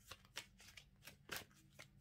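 A tarot deck being shuffled by hand: a run of faint, irregular soft card clicks and slides.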